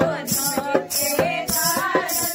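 Group of women singing a Kumaoni Holi song together, accompanied by steady dholak drum strokes and rhythmic hand clapping about twice a second.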